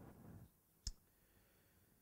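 Near silence: quiet room tone with one short, sharp click a little under a second in.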